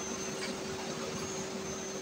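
Steady whir and hiss of running workshop machinery, with a constant hum and a thin high whine.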